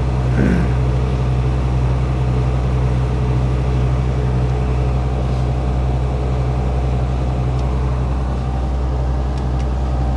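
Mercedes Actros truck's diesel engine idling steadily, heard from inside the cab.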